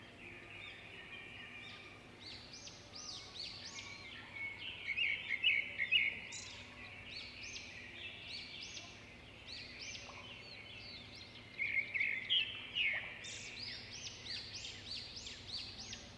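Faint background of birds chirping: many short, high twittering calls, busier about five seconds in and again near twelve seconds.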